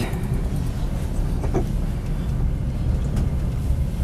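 Steady low rumble of a moving passenger train, heard from inside a sleeping carriage.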